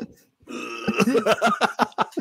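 People laughing: after a brief pause, a run of short, quick vocal bursts.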